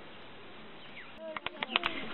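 A steady outdoor background hiss, then from about a second and a half in a quick run of sharp clicks.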